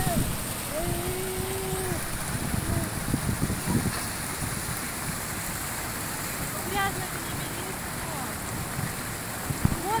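Small waterfall pouring over rock ledges into a shallow stream, a steady splashing rush of water. A brief held voice sound comes about a second in and another short one near seven seconds.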